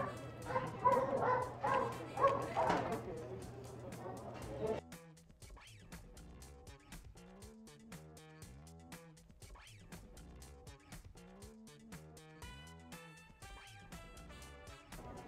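Background music with a steady beat. For the first five seconds, short, louder pitched sounds lie over it, then the music goes on alone and quieter.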